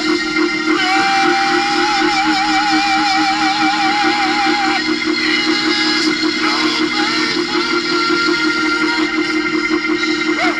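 Live gospel music: a male singer holds one long high note with vibrato for about four seconds, then sings shorter phrases, over steady instrumental backing.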